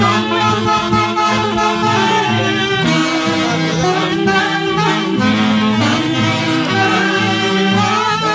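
Saxophone section of an Andean orquesta típica playing an instrumental passage of a live song in parallel harmony, amplified through the stage speakers.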